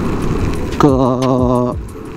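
Steady low rumble of wind and road noise from a Yamaha NMAX scooter being ridden on a wet road, with a drawn-out spoken word about a second in.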